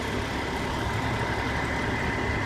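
Heavy truck engine, most likely a wrecker's diesel, running steadily at idle: an even low rumble with no sudden knocks or revs.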